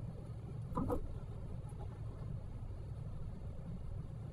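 Steady low road and engine rumble heard inside a moving car's cabin, with one brief, louder sound about a second in.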